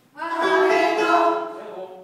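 Mixed choir singing together, coming in about a quarter second in on a held chord that fades away near the end.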